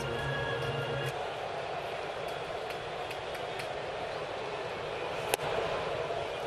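Ballpark crowd noise, steady and fairly quiet, with a low hum that stops about a second in. About five seconds in there is a single sharp pop as the pitch smacks into the catcher's mitt for a ball.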